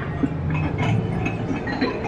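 Clinking and clattering of china and crockery, scattered light clinks over a steady low rumble.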